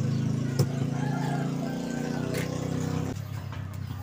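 Steady low hum from a karaoke PA speaker with its microphone channel live, with a couple of light handling clicks. The hum drops away sharply about three seconds in.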